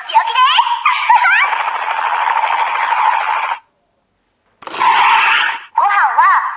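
Kiramai Changer Memorial Edition toy playing its electronic sounds: a high, sing-song voice clip, then a sustained hissing effect that cuts off suddenly. After a second of silence a shorter hissing burst follows, and the voice returns at the very end.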